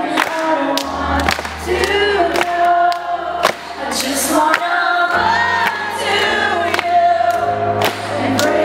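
A woman singing live to her own Roland RD-300GX stage piano, with low piano notes held under the voice.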